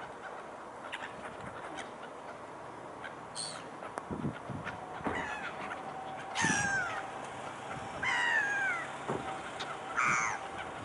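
Gulls calling: two loud drawn-out calls that fall in pitch, a little past the middle and again near the end, after a short faint high call.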